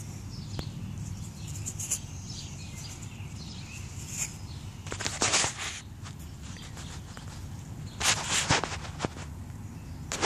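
Close handling and rustling noise with a steady low rumble, and two louder scratchy rustles about five and eight seconds in. Faint bird chirps sound in the first few seconds.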